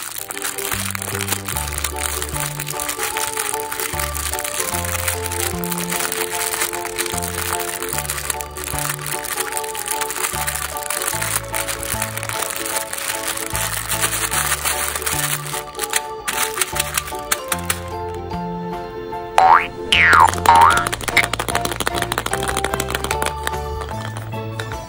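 Crinkling and crackling of a clear plastic bag packed with small plastic beads as fingers squeeze and knead it, over background music with a steady stepping bass line. Shortly before the end a few quick whistle-like sound-effect swoops go up and down in pitch and are the loudest sounds.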